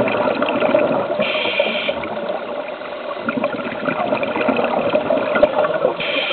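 Underwater sound of scuba diving heard through a camera housing: steady bubbling and crackling of divers' exhaled air, with a short regulator hiss about a second in.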